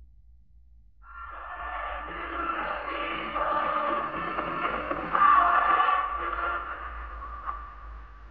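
Archival 1972 Radio Hanoi broadcast recording starting to play about a second in: thin, narrow-band music under radio noise, loudest a little past the middle.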